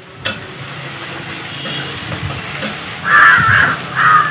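Chopped onions sizzling steadily in hot mustard oil in a steel kadhai as they are stirred with a metal spatula, with a sharp clink about a quarter second in. A loud call cuts in near the end.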